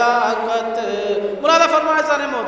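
A man chanting a noha (Urdu mourning poem) in a melodic recitation style, drawing out long held notes. A louder new phrase starts about one and a half seconds in.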